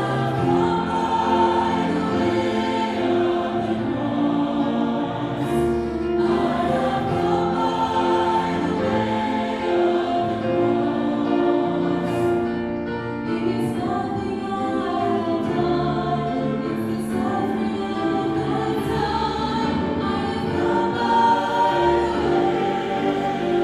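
Mixed church choir of men and women singing a gospel song in long, held chords.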